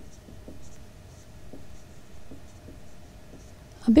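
Marker pen writing on a whiteboard: a run of faint, short, irregular strokes as words are written.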